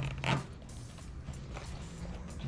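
Zipper on a soft pool cue case's accessory pocket being pulled open: one quick zip in the first half second, then fainter handling sounds as the pocket is opened.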